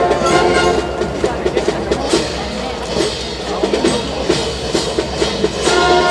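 High school wind band playing a march. A brass phrase ends shortly in, then the drums keep a steady marching beat on their own until the brass comes back in near the end.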